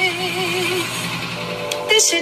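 A woman singing a long held note with an even wobble, which fades out about a second in, followed by a steady sustained chord from the backing track near the end.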